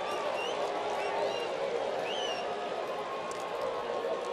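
Ballpark crowd noise: a steady murmur from the stands, with a few faint high calls over it.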